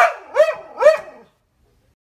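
Siberian husky giving three short calls about half a second apart, each rising then falling in pitch: husky 'talking'.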